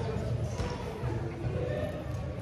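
Many children's and adults' voices talking at once, echoing in a school gymnasium, with a basketball bouncing on the court floor.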